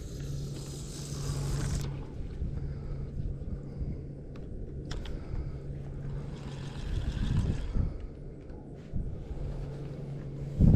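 Handling noise from a spinning rod and reel being picked up and worked by hand: rustling and low knocks, with a sharp click about five seconds in. Under it runs a steady low hum that drops out after the first two seconds and returns near the end.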